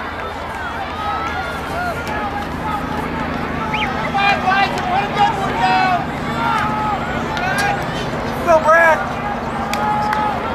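Background chatter of many voices, people talking and calling out across an open field, with livelier calls about four to six seconds in and one loud, high-pitched shout near the end.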